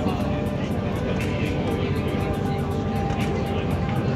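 Steady drone of a high-speed passenger ferry's engines heard inside the cabin, under background music with a quick ticking beat of about four ticks a second.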